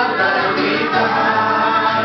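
A worship song sung by a woman and several voices to an acoustic guitar, the singing held steady throughout.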